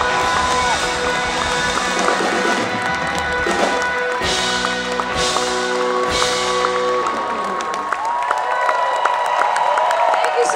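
Live pop-rock band playing the ending of a song: held chords with three cymbal crashes about a second apart in the middle. Near the end the bass and drums drop away, leaving held notes and pedal steel guitar slides ringing out.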